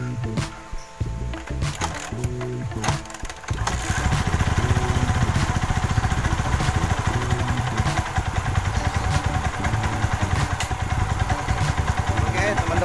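Intro music at first, then about a third of the way in a Yamaha single-cylinder four-stroke motorcycle engine starts running with a fast, rough, knocking rhythm. The rough sound is the sign of a worn, loose piston skirt (piston slap).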